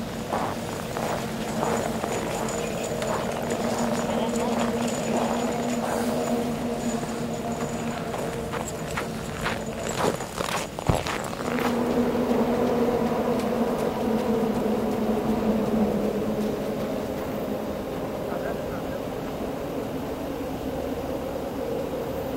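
A steady low mechanical drone holding two fixed pitches, with a run of crunching, clicking steps in snow over the first half and one sharp knock about eleven seconds in.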